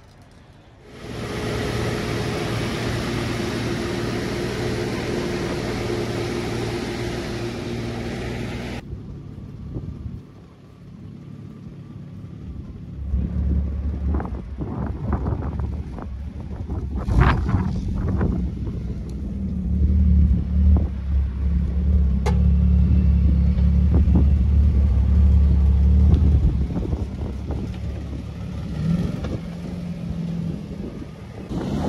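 A steady hiss over a low hum that stops abruptly about nine seconds in, then the freshly rebuilt engine of a 1993 BMW E34 wagon running with a deep rumble as the car moves off, loudest in the last third.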